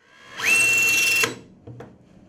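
Nitto Kohki brushless electric screwdriver driving a screw into a metal block. The motor starts quietly, rises quickly to a steady high whine, runs for under a second and stops as the screw seats. A few light clicks follow.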